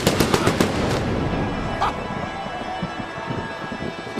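Wrestling-entrance pyrotechnics going off: a fast string of sharp bangs in the first second, then a dense crackling rumble.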